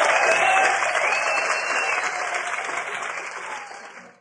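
Concert audience applauding and cheering after a live rock song, fading out steadily towards the end.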